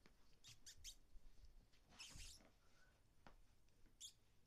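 Near silence: room tone with a few faint, brief scratchy noises, three quick ones about half a second in and a slightly longer one about two seconds in.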